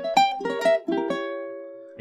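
Ukulele picking single notes of a diminished chord shape as a quick rising run, about six notes in the first second, with the last notes left to ring and fade.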